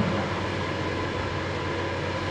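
Steady room tone between speech: an even low hum and hiss with no distinct events.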